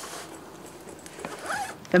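Soft rustling of plastic packaging and clothing as a baby-sized doll is handled. The rustle is loudest at the start, and a faint, short vocal sound follows about one and a half seconds in.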